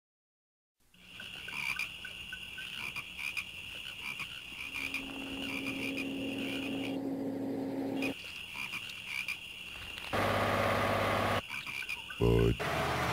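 Swamp ambience that starts about a second in: insects keep up a steady high trill while frogs croak, with a louder, longer croak lasting over a second near the end.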